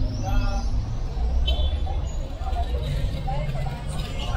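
Street traffic: car engines running at low speed, a steady rumble, with people's voices in the street.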